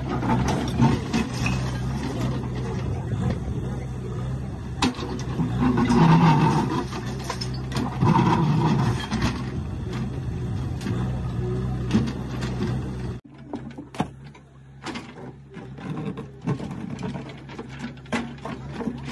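Diesel engine of a JCB backhoe loader running steadily, with a crowd's voices over it. About thirteen seconds in the sound drops suddenly to a quieter engine with scattered knocks.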